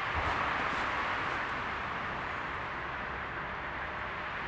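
Steady hiss of motorway traffic running on without a break, with a few faint ticks in the first second.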